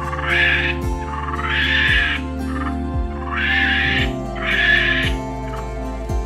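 Monkey giving four harsh calls, each about half a second long, over background music with a steady beat about once a second.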